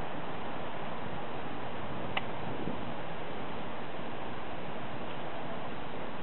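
Steady background hiss with a single sharp click about two seconds in: hand nippers snipping through the stem of a white eggplant.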